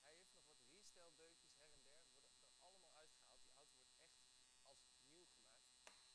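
Very faint talking over a steady electrical hum with a high whine. A single sharp click just before the end, as the car's front door latch is opened.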